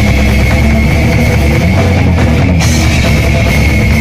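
Live brutal death metal band playing loud and dense: distorted bass and electric guitar over a drum kit.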